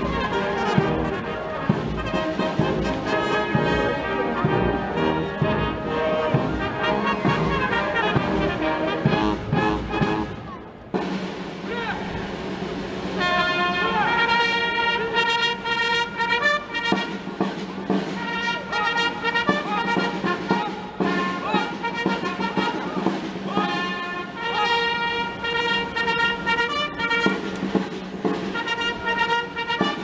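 Military brass band playing ceremonial music. About eleven seconds in the music dips briefly, and a new passage starts with long held brass notes over a steady low note.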